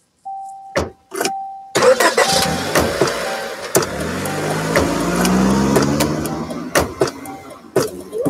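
Car sound effects: a steady, broken warning tone, then a car engine starting about two seconds in and speeding up with a rising pitch that fades near the end. Sharp clicks and knocks recur through it like a beat.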